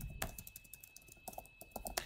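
Typing on a computer keyboard: a run of irregular keystrokes, sparse at first and coming quicker in the second half.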